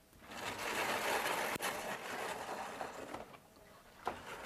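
Rapid, rough scraping on a lecture-hall blackboard for about three seconds, with a single sharp click partway through.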